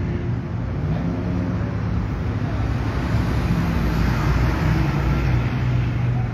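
Street traffic: a steady low engine hum from a vehicle running nearby, with road noise that swells a little around the middle.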